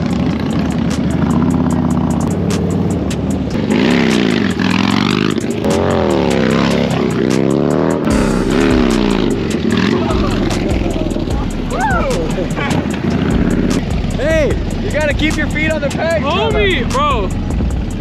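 Harley-Davidson V-twin motorcycle engine revving up and down repeatedly as the rider throttles into wheelies, strongest a few seconds in.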